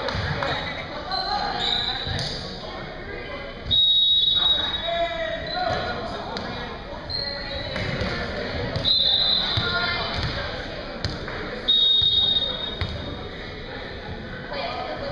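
Busy gymnasium ambience: a murmur of voices echoing in the large hall, with balls bouncing on the hardwood floor. Three loud, sharp high-pitched tones of under a second each, about four seconds apart, stand out above the chatter.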